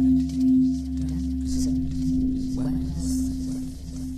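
Soundtrack music: a singing bowl holding one long, low ringing tone over a deep drone. It swells twice at the start and then rings on steadily.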